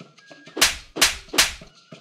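Three sharp fight-style sound effects, each a sudden hit trailing off in a short hiss, about 0.4 seconds apart, over soft background music with light ticking percussion.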